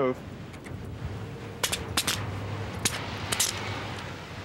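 Metal handcuffs being snapped and ratcheted shut on a wrist: a handful of sharp metallic clicks, from about a second and a half in to near the end.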